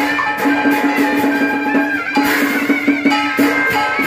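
Southern Vietnamese ceremonial ensemble music (nhạc lễ): a kèn reed horn plays a wavering melody that slides between notes, over a steady low note and an even beat of drum strokes.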